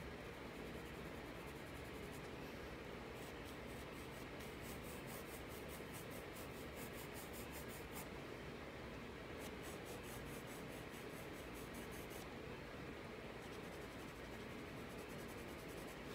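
Graphite pencil scratching on sketchbook paper in a run of quick, even hatching strokes. The strokes begin a few seconds in, break off briefly partway, and stop a few seconds before the end.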